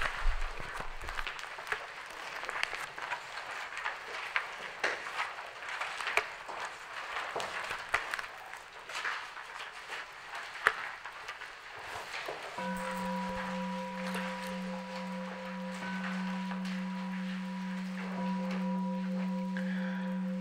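Faint irregular crackling and rustling for the first twelve seconds or so. Then a single sustained low note with overtones comes in and holds steady: the opening drone of background music.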